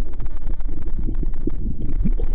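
Sea water sloshing and lapping against a waterproof camera held at the surface, with many small splashes and a steady low rumble on the microphone.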